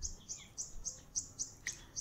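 A bird chirping faintly in the background: short high chirps repeated about three to four times a second.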